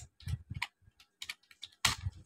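Typing on a computer keyboard: a quick run of separate keystroke clicks, about five a second.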